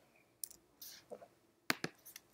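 A few sharp clicks from computer input (mouse and keys) while a document is edited, with two close together near the end. A short soft hiss comes about a second in.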